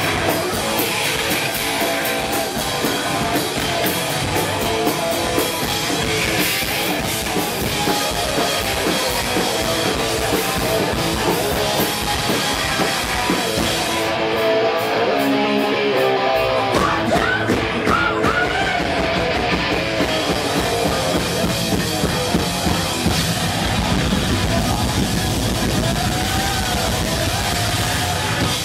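Punk rock band playing live and loud: distorted electric guitar, bass and a drum kit driving fast, with shouted vocals over the top.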